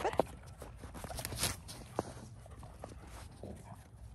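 Golden retriever puppies moving about in snow: light paw steps and small scattered clicks, with one short, louder rustle about a second and a half in.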